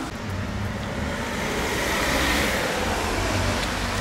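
Broad rushing background noise with a low rumble underneath, swelling slightly about halfway through and then easing off.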